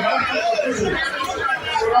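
Speech only: a man talking into a handheld microphone.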